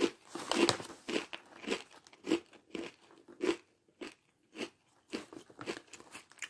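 A person chewing a mouthful of Catalina Crunch Cheddar Crunch Mix, crunchy cheese crackers and protein cereal pieces, with steady crisp crunches about twice a second.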